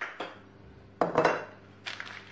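Kitchen crockery knocking and clinking on a stone countertop as bowls and packets are moved about. There are a few separate knocks, the loudest a little after a second in, and a short sharp click near the end.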